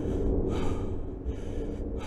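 A low, steady drone with a soft breath sound over it about half a second in, and a shorter one near the end.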